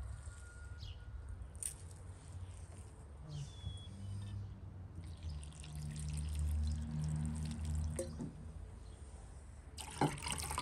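Water poured from a glass jug onto shredded red cabbage in a ceramic bowl, splashing and trickling for a few seconds past the middle. A low steady hum swells under it at the same time.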